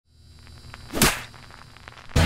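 A single quick whoosh about a second in, over a faint low hum and a few soft clicks.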